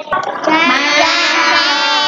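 A high voice chanting one long, drawn-out Khmer syllable in the sing-song way that spelling syllables are read aloud in a first-grade reading lesson, held for about two seconds.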